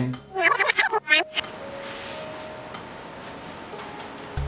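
A man's voice for about the first second, then a quiet steady hiss with a faint held tone.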